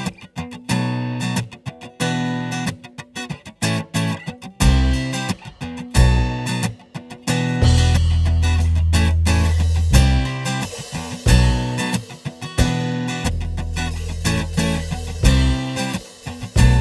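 A live band plays the instrumental intro of a pop-rock song. An acoustic guitar is strummed in a steady rhythm, with bass guitar coming in about five seconds in and drums keeping time.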